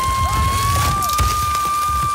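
Loose scree and grit rushing and scraping under a person sliding down a steep rocky mountain slope, with an uneven low rumble. A long, steady, high-pitched tone is held over it, creeping slightly up in pitch.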